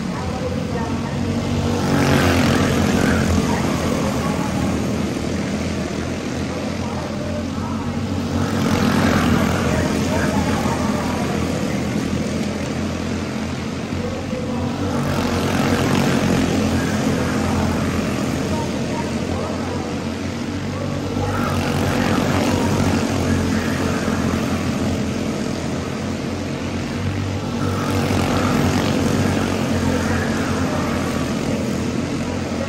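A pack of Senior Honda quarter midget race cars running laps on a small oval, their small single-cylinder Honda engines buzzing together. The sound swells loud each time the pack passes, about every six or seven seconds.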